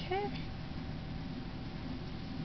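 A single short vocal call just after the start, bending up then down in pitch, over steady low background noise.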